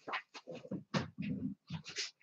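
A dog making a few short, soft vocal sounds.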